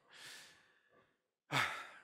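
A man sighs, a breathy exhalation close to the microphone lasting under a second, then a short spoken 'uh' near the end.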